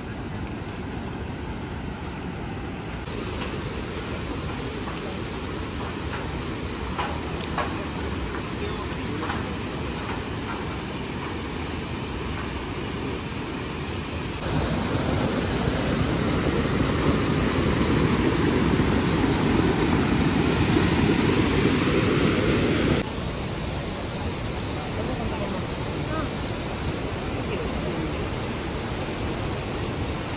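Steady rushing of the Iguazú River and its waterfalls, a continuous roar of water. It grows louder for about eight seconds in the middle, where the river runs over a rocky ledge, then drops back suddenly at a cut.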